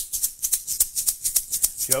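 A hand-held shaker shaken in a fast, even rhythm, keeping the beat between sung lines of a children's song; singing comes in right at the end.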